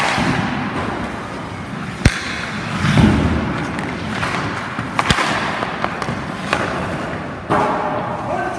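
Hockey skates scraping on rink ice, with sharp knocks of sticks striking pucks and pucks hitting goalie pads, four of them spread through, the loudest about five seconds in.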